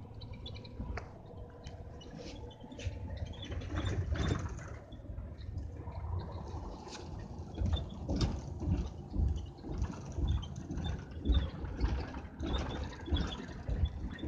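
Cabin noise inside a moving coach bus: a steady low rumble of engine and road, with frequent knocks and rattles from the bus's interior that grow louder and more frequent in the second half.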